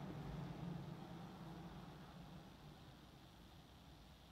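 Quiet room tone: a faint low hum that slowly fades away.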